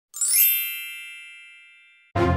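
Sparkling chime sound effect: a quick upward sweep of bright bell-like tones that rings on and fades away over about a second and a half.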